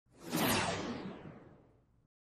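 A whoosh sound effect that swells up quickly and then fades over about a second and a half, its hiss growing duller as it dies away.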